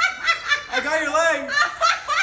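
A person laughing hard in a quick run of short bursts.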